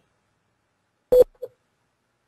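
Silence, broken about a second in by a short, loud, beep-like tone with a click at its start, then a fainter, shorter blip at the same pitch.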